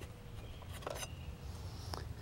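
A couple of faint light clicks about a second in from the arm of a Swing Solver golf training aid being worked loose and pulled from its frame, over a low steady outdoor rumble.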